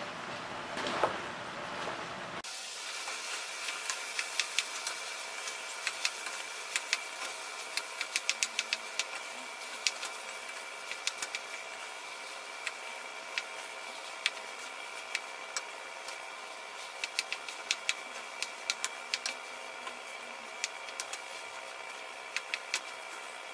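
Wooden spatula stirring and tossing rice in a nonstick pan, with irregular sharp clicks and knocks as it strikes the pan. These start about two seconds in and run over a steady mechanical hum.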